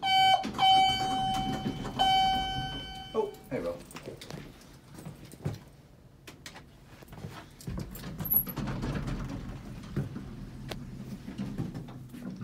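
Elevator car's buzzer sounding a steady high tone for about three and a half seconds, broken by two short gaps. After it come scattered clicks and knocks and a low rumble.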